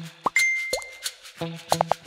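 Cartoon pop sound effects with a bell-like ding, about three-quarters of a second long, as chat message bubbles pop onto the screen. Underneath is light plucked background music with a steady beat.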